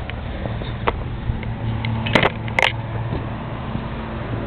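Ford pickup idling steadily through a 14-inch Magnaflow muffler, heard at the tailpipe. A few sharp knocks come through, the loudest two about half a second apart a little past the middle.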